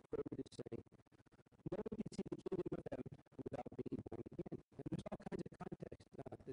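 A man's speaking voice chopped into rapid stuttering fragments by audio dropouts, so that no words come through clearly.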